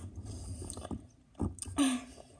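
Chewing a sticky clump of sour candy: a few short wet mouth clicks and smacks in the second half, over a low rumble.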